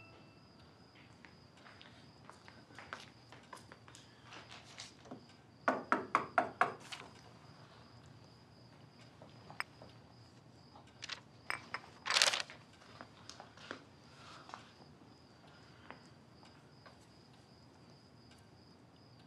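Quiet room with small scattered clicks and taps, a quick run of about six sharp knocks about six seconds in, and a short rustle about twelve seconds in, over a faint steady high-pitched whine.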